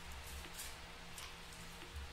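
Tarot cards being shuffled and handled: faint, soft swishes of card on card at uneven intervals, over a low steady room hum.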